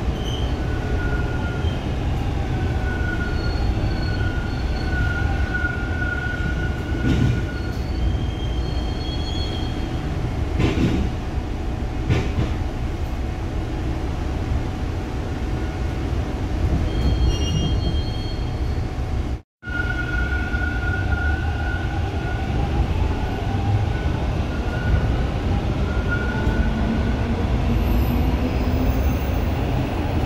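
Interior of a T1 subway car running at speed through the tunnel: a steady low rumble of wheels on track, with high-pitched squeals that come and go and a few clacks over rail joints.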